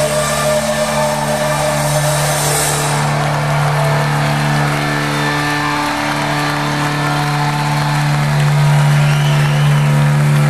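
Live rock band holding a loud, droning chord on amplified guitars, its notes held steady without a beat. Near the end, a few high crowd whistles rise over it.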